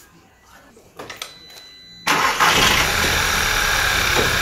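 A few faint clicks, then about halfway through a VW/Audi EA888 2.0 TFSI four-cylinder turbo petrol engine comes in abruptly, running at idle, loud and steady. It is the shaking, misfiring engine, which has a faulty ignition coil pack with a misfire detected on cylinder 3.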